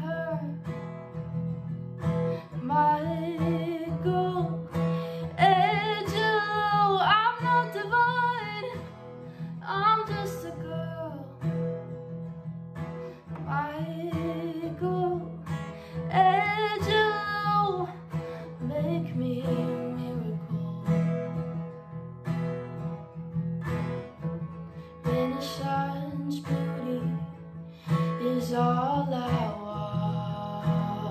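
A young woman singing, holding some notes with vibrato, while strumming a Simon & Patrick acoustic guitar.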